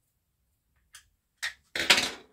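Near silence for about a second, then three short clatters of hand tools being picked up and set down on a workbench, the last the loudest.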